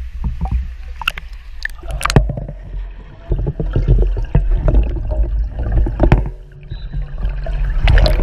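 Pool water splashing and sloshing against a camera at the surface, with a few sharp splashes in the first two seconds, then the muffled rumble and gurgle of the camera underwater in a swimming pool.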